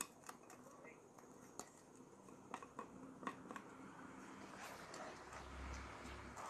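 Near silence with a few faint clicks, then faint scraping as a wooden spatula stirs coconut milk and sugar in a nonstick pan, growing slightly toward the end.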